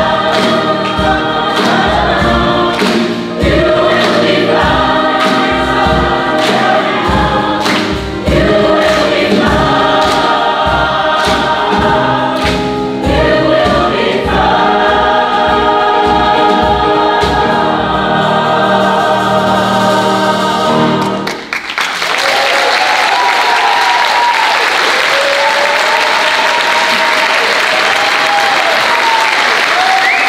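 Large mixed choir singing an upbeat, gospel-style song over a regular low beat. The song ends about two-thirds of the way through, and the audience breaks into applause.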